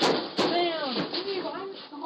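A woman's wordless cries as she slips and falls on snowy front steps, after a couple of sharp knocks right at the start.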